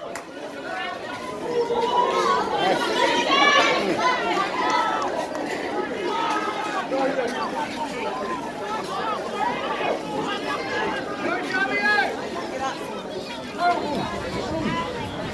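Many voices at once: rugby players and sideline spectators calling and shouting over one another, with no single voice standing out.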